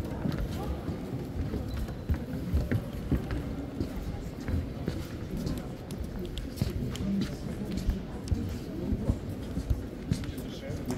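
Indistinct murmur of many voices echoing in a large stone church, with scattered footsteps on the stone floor.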